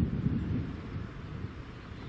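Wind buffeting the microphone: a low, uneven rumble, strongest in a gust at the start and easing after about half a second.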